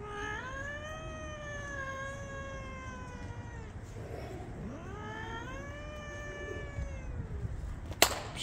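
A cat yowling while confronting another cat: two long, drawn-out caterwauls, each rising at the start, held, then sliding down in pitch, the second beginning about four and a half seconds in.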